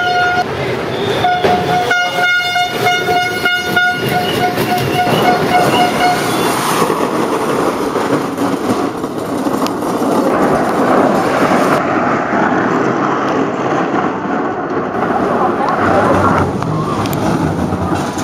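A horn sounds a held note, then a run of short toots over about the first six seconds, above a noisy background with voices. After that comes a steady rushing noise with voices and no tone.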